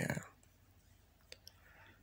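A word trails off, then a quiet pause with two small mouth clicks a little past halfway, and a soft intake of breath near the end, right up close to the microphone.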